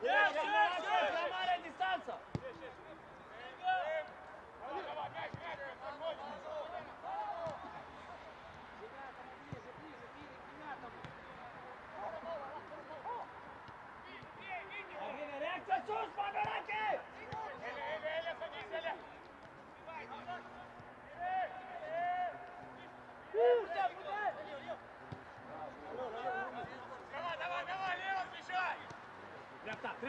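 Intermittent shouting by players and coaches on an open football pitch, with the occasional thud of the ball being kicked.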